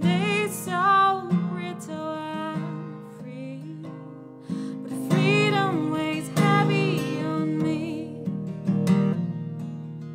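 A woman singing over a strummed acoustic guitar, the voice rising in held, bending notes near the start and again about halfway through.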